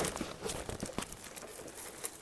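Plastic packaging bag crinkling and cardboard box rustling as hands dig into a shipping box: a run of small irregular crackles and scrapes.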